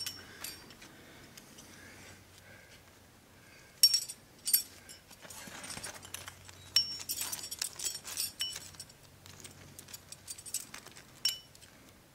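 Metal climbing gear, the carabiners and cams racked on a harness, clinking and jangling as the climber moves and handles it. The clinks come in clusters: a few around four seconds in, a longer run through the middle, and single clinks near the end.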